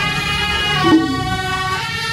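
A marching procession band of wind instruments playing a melody together in long held notes, with a louder accent about a second in.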